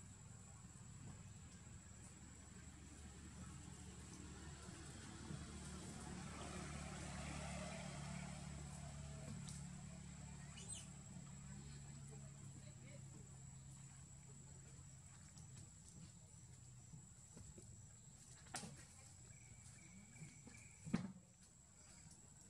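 Faint outdoor forest ambience: a steady high-pitched insect tone over a low hum that swells and fades a few seconds in. Two sharp snaps come near the end, the second the loudest.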